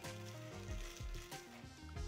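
Soft background music with held notes and a low bass line, over a faint scratchy rustle of a bristle bottle brush being pushed into a plastic spray bottle.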